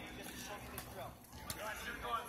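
Voices of people talking on a practice field, with one sharp slap about one and a half seconds in as a football is caught in the hands.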